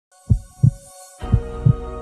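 Heartbeat sound effect in the background music: deep double thumps, lub-dub, twice about a second apart, with a held music chord swelling in just after the first pair.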